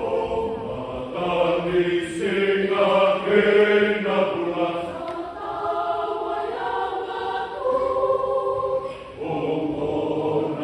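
A Fijian Methodist church choir of men and women singing in parts, several voice lines at once, with a brief lull about nine seconds in before the voices come in again.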